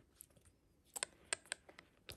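A few faint, sharp clicks and taps from fingers and nails handling a small quilted lambskin handbag and its metal CC turn-lock clasp, mostly in the second half.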